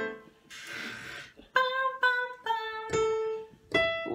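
A short breathy hiss, then a short melody of single steady musical notes, about four, played one after another on an instrument.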